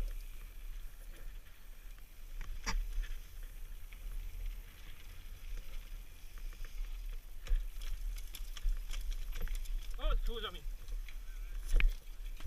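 Mountain bike rattling down a rough dirt trail, with scattered sharp clicks and knocks over a steady low rumble of wind on the helmet camera's microphone. About ten seconds in, a person's voice gives a short call that falls in pitch.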